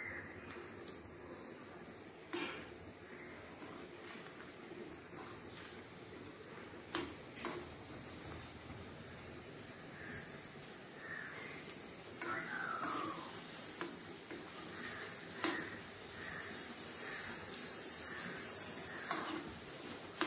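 Dried red chillies frying in hot oil in a small non-stick pan: a steady sizzle that slowly grows louder, with a few sharp clicks of a metal spoon against the pan.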